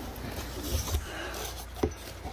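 Cardboard product boxes handled and slid inside a cardboard carton: light scuffing and rubbing of cardboard, with one short knock near the end.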